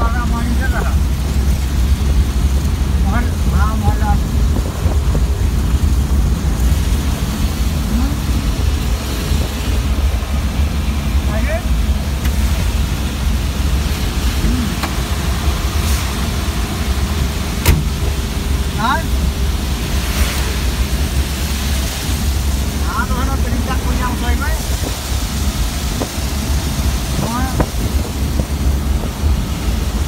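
Van engine and road noise heard from inside the cab while driving through rain on a wet road: a steady low rumble under a constant hiss from tyres and rain. Short snatches of voice come and go, and there is one sharp knock about two-thirds of the way through.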